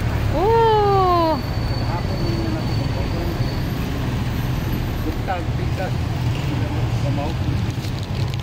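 Steady low rumble of street traffic, with a loud drawn-out voice-like call that rises then falls in pitch about half a second in, and a few faint short chirps around five seconds.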